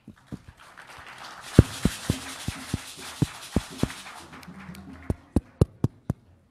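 Audience applauding briefly, fading out after about four seconds, with a series of sharp knocks close to the microphone throughout.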